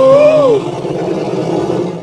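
Dinosaur roaring for a puppet fight: a loud, wavering pitched roar that breaks off about half a second in, then a rougher, rumbling growl.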